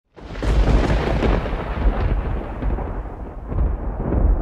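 Thunder: loud from a sudden start, its crackle thinning out after a second or two while a deep rolling rumble goes on and swells again near the end.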